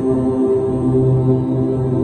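Devotional mantra chanting: a low voice holding long, steady notes with brief breaks between them.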